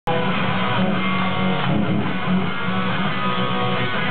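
Rock band playing live, led by electric guitar. The music cuts in abruptly at the very start and runs at a steady, loud level, with a dull, muffled top end.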